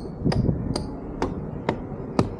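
Footsteps climbing wooden-decked steps, about two sharp steps a second, over a low rumble.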